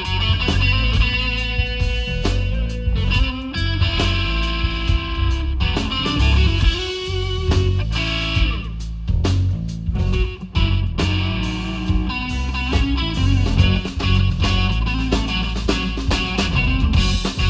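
Live rock power trio playing an instrumental passage without vocals: a Telecaster-style electric guitar leads with held notes over bass guitar and drum kit.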